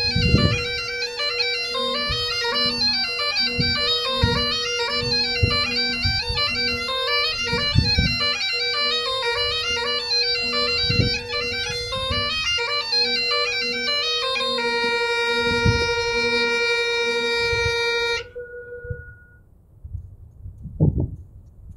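Bagpipes playing a quick tune over a steady drone. About fourteen and a half seconds in, the chanter settles on one long held note, and the pipes then cut off near the end, the last of the drone dying away a moment later.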